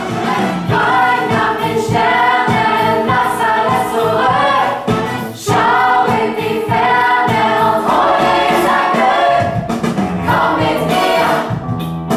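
A choir singing a melodic passage in several voices, with a brief break about five seconds in.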